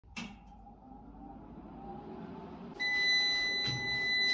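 A click as a button is pressed on an MPP Solar inverter's control panel, then, about three seconds in, the inverter's buzzer sounds one loud, steady, high beep that runs on past a second.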